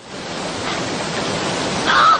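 Fast river water rushing steadily, with a short honking call right at the end.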